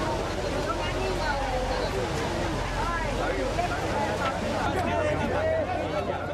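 A crowd of many people talking and calling out at once, voices overlapping, over a steady low hum.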